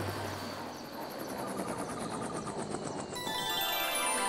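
Cartoon helicopter rotor sound effect: a fast, even chopping that fades away as the helicopter comes down, over background music. About three seconds in, a bright tinkling chime begins.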